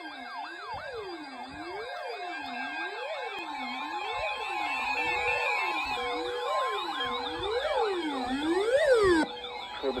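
Several weather alert radios sounding their alarms at once for a tornado watch. Their overlapping siren-like wails rise and fall about once a second, with a steady tone and a short repeated beep joining in the middle. The lowest wail cuts off suddenly a little past nine seconds.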